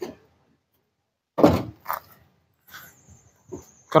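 A few short thuds from the rear canopy hatch of a UAZ Pickup being handled. The loudest comes about a second and a half in, with softer ones after it.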